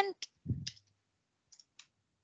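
Computer keyboard typing: a few short, scattered keystroke clicks with a soft thump among them, heard faintly.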